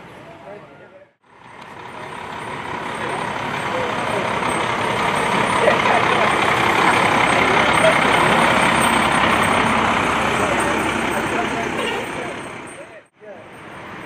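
Fire engine driving past close by, its noise building to a peak about halfway through and then fading away.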